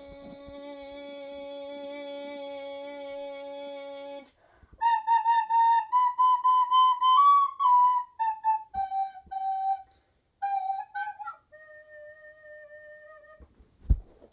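A long steady held sung note for about four seconds, then a plastic soprano recorder plays a short tune of separate notes that step downward and ends on a long low note. A sharp thump right at the end.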